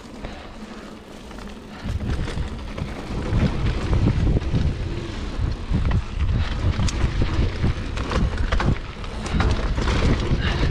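A Giant Trance 2 full-suspension mountain bike rolling fast down a dirt singletrack: wind buffeting the microphone and the tyres rumbling over the ground, with rattles and knocks from the bike over bumps. The rumble turns loud about two seconds in as the bike picks up speed.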